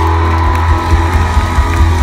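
Rock band's amplified guitars and bass holding a loud sustained chord, with a steady high tone over a heavy low drone, as the song ends. A crowd cheers and whoops underneath.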